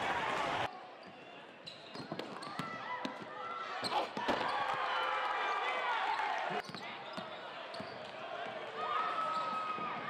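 Live basketball game sound in a gym: a basketball bouncing on the hardwood court, sneakers squeaking and crowd voices. The sound drops suddenly about a second in, then picks up again, with the sharpest thumps around the middle.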